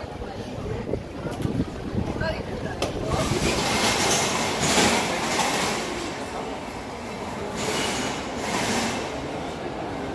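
A train passing, its rumble and rushing noise swelling about three seconds in and dying away near the end.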